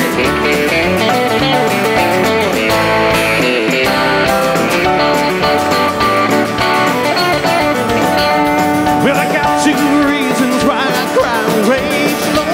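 Live band playing an instrumental passage: guitars over bass and drums, with a guitar carrying the lead.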